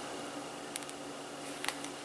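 Quiet room tone with a steady low hum, broken by a couple of faint clicks about a second in and near the end: small plastic handling sounds of a liquid lipstick tube as its cap comes off.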